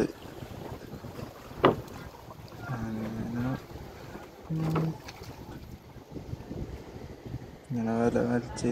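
Men's voices giving two short, drawn-out calls while hauling the ropes of a Chinese fishing net, with a single sharp knock from the rigging about a second and a half in, over a steady wash of wind and water.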